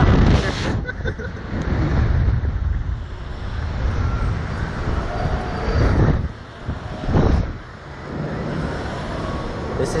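Wind rushing over the microphone of a camera mounted on a slingshot reverse-bungee ride capsule as it swings and bounces in the air, a loud buffeting roar with strong gusts at the start and about six and seven seconds in.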